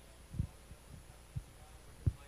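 Two soft low thumps on a handheld microphone about a second apart, the first the louder, over a steady low hum.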